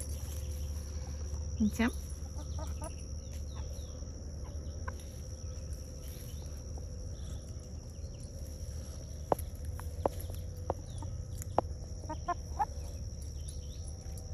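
Backyard hens clucking softly as they forage, with a few short calls and several sharp ticks in the second half.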